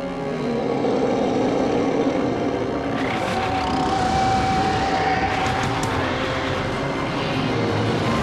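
A loud, steady rushing sound effect over dramatic soundtrack music.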